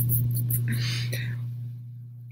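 A woman's soft, breathy laugh or exhale about a second in, over a steady low hum.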